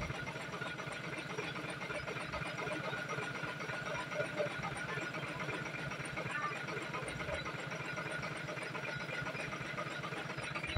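Floodwater flowing fast over a submerged road: a steady rushing hiss.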